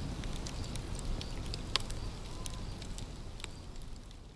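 Campfire crackling: a steady hiss with scattered sharp pops at irregular intervals, slowly fading toward the end.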